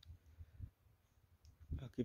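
Near silence in a pause of outdoor speech, with a few faint soft clicks.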